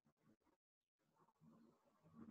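Near silence: faint background noise of an online call's audio, cutting out completely for a moment about half a second in.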